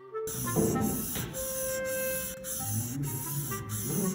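Steel chisel blade scraped back and forth on a wet whetstone during sharpening: a gritty, hissing scrape broken by brief pauses about once a second.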